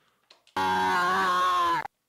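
A man screaming right into the microphone, one loud held cry of a little over a second that starts about half a second in and cuts off suddenly. It is so close to the microphone that it is really peaky and distorted.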